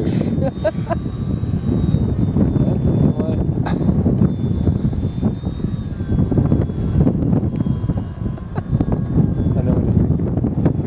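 Wind buffeting the microphone in a steady low rumble, with the faint high whine of a distant Multiplex FunCub's electric motor and propeller holding a steady note overhead.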